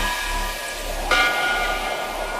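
Hissing noise over a faint low bass, with a sustained high chord of steady tones entering about a second in, as the electronic music drops away between segments of the mix.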